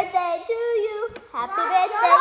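A young girl singing, with one note held for about half a second.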